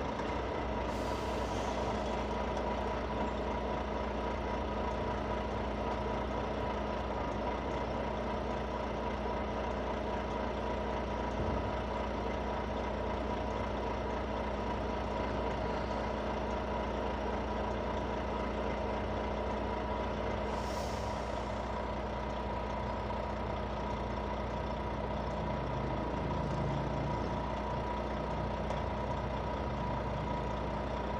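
Semi-truck tractor unit's diesel engine idling steadily. Two short hisses of air come over it, about a second in and again around twenty-one seconds in.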